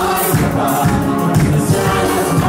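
A congregation singing a gospel worship song together as a choir of many voices, with music and a steady beat.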